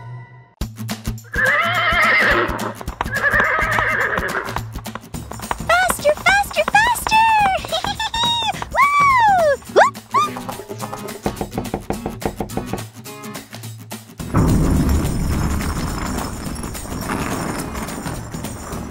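Horse whinnying, a long call with rising and falling pitch, then hoofbeats clip-clopping, over background music. Near the end comes a loud rough rumbling as a toy castle's drawbridge is lowered.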